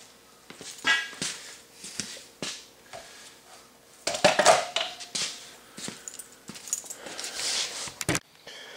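Scattered knocks, clinks and rustles of tools and a steel trailer ramp being handled. The activity picks up about halfway through.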